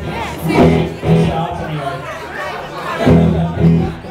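Voices and crowd chatter in a live-music hall between songs, mixed with stray sounds from the band's instruments, with louder swells about half a second, a second and three seconds in.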